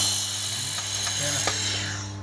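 A 1000 W handheld fiber laser welder firing on steel plate. It starts with a sharp click, then gives a steady crackling hiss from the weld spatter and shielding gas, which thins out near the end. A steady low machine hum runs underneath.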